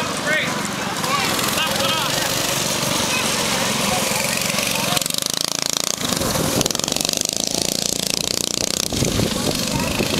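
Small go-kart engines running as two karts race around a dirt track.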